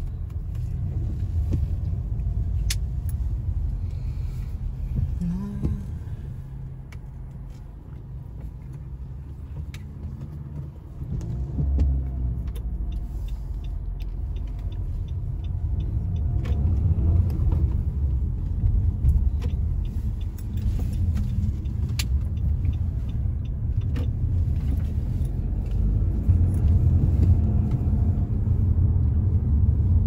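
A car's low engine and road rumble heard from inside the cabin while driving, quieter for a few seconds about a third of the way in and then growing louder again, with occasional light clicks.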